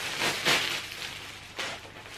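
Clear plastic packaging crinkling and rustling as a garment is handled and pulled out of it, louder about half a second in and again near the end.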